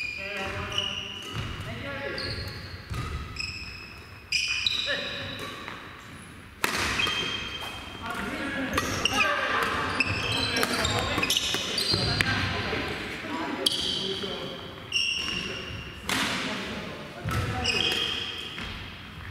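Badminton play on several courts: rackets hitting shuttlecocks with sharp cracks about half a dozen times, among many short, high squeaks of sneakers on the wooden gym floor, echoing in the large hall.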